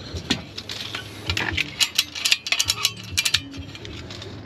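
Quick series of sharp clicks and light metallic clinks, densest from about one to three and a half seconds in, as a galvanised steel ratchet chimney bracket is picked up and handled.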